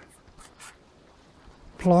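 A few faint, short scratchy rubs in the first second as a fingertip presses and rubs at old, still-pliable window sealant on a caravan's aluminium window frame.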